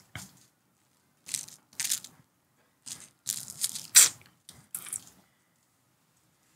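Dry crinkling and crunching from hands breaking up cannabis and handling its plastic packaging while rolling. It comes in about six short bursts, the loudest about four seconds in.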